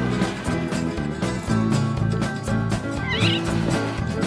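Upbeat country-style instrumental background music with plucked strings, with a short cat meow about three seconds in.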